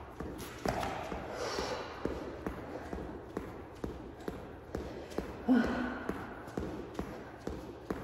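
Sneakers tapping and thudding on a rubber exercise mat in a steady rhythm of about two to three steps a second during mountain climbers, with hard breathing and a short grunt about five and a half seconds in.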